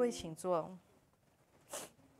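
A person's voice, short and falling in pitch, in the first moment as a sustained chord ends. Then near quiet, with one short breathy hiss near the end.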